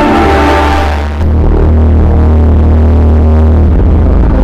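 Loud electronic concert music played over an arena PA and recorded on a phone. Sustained synth chords give way about a second in to a heavy, steady deep bass drone as the high end drops out.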